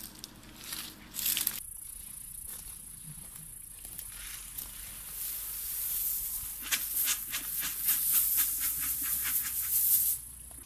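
Dry leaves and brittle brush rustling and crackling as people move and work in it, busier in the second half, over a steady high hiss.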